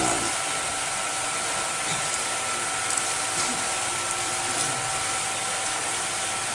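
Steady hiss of background noise with two faint, steady tones running through it, the noise of the lecture's recording and sound system with no one speaking.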